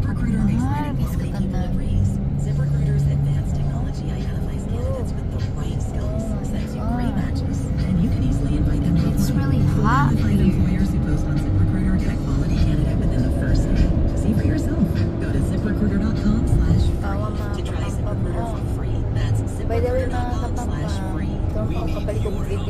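Inside a moving car: a steady low rumble of engine and road noise, with a car radio playing music and talk over it.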